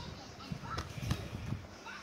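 Handling noise: a few soft knocks and rustles as a plastic disc case is moved about, with faint snatches of a child's voice.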